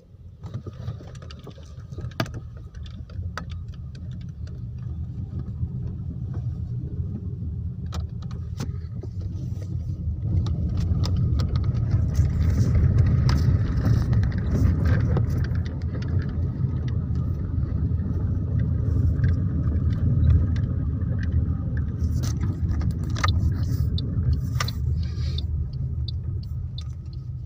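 Road noise inside a moving car: a steady low rumble of engine and tyres that builds over the first twelve seconds or so as the car picks up speed, then holds. Scattered small clicks and rattles sound over it.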